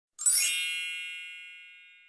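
A single bright, high chime, struck about a quarter second in and dying away slowly over the next second and a half: the sound effect of an animated intro title.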